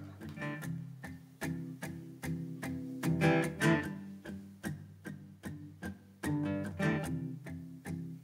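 Acoustic guitars playing the instrumental intro of a country song, chords strummed in a steady rhythm.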